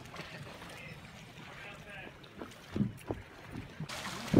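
Faint, distant voices over a steady hiss of wind and water, with a few short louder sounds a little before the end.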